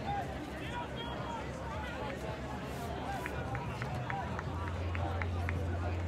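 Background chatter of many people's voices at once, with no single clear speaker, over a low steady hum that grows louder in the second half. A run of short sharp ticks comes through in the middle.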